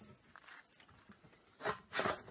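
Plastic slide door of a compost tumbler bin being moved: two short scrapes close together near the end, after a quiet stretch.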